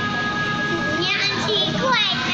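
A young child's high-pitched voice laughing and squealing, starting about a second in, over steady background music.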